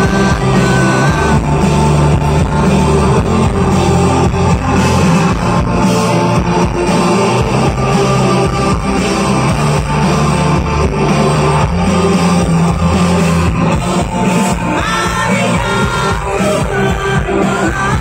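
Live rock band playing loudly: electric guitars, bass and drums, with a singer's vocal over them.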